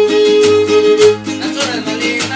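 Huasteco trio playing an instrumental cumbia passage: the violin holds one long note for about a second and then moves on, over the steady strummed rhythm of the jarana huasteca and huapanguera.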